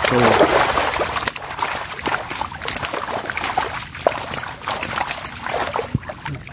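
Water splashing and sloshing in irregular bursts around a chicken-wire fish trap as it is worked in shallow water with tilapia thrashing inside. The splashing is loudest at first and eases off.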